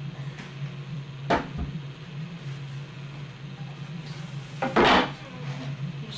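Objects being handled and set down: one sharp knock about a second in and a louder clatter near the end, over a steady low hum.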